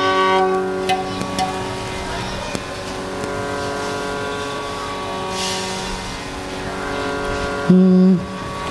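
A violin's last notes fade out in the first second, then a steady drone holds on one pitch, as for a Carnatic concert's tuning. Near the end a short, loud note sounds on the drone's pitch.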